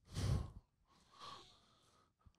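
A person's audible breath out, a short sigh-like exhale, then a fainter breath about a second later.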